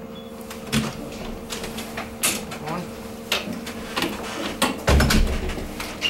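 Coffee machine humming steadily, with a run of clicks and knocks and a heavy thump about five seconds in, as its touchscreen reset/clean routine is started.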